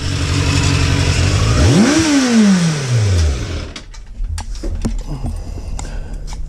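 Motorcycle engine under a loud hiss, blipped once about a second and a half in: the pitch climbs sharply and then falls back over about a second and a half. The engine sound stops before the end, and a few short knocks and clicks follow.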